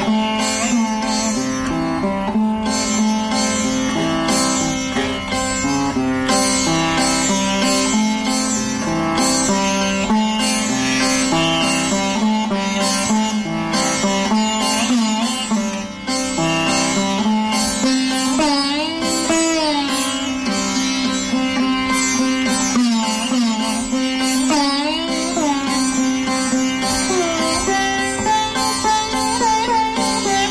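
Solo sitar playing Raga Bibhas: plucked notes over a steady drone, with the pitch bent up and down in long string-pulled glides (meend) in the second half.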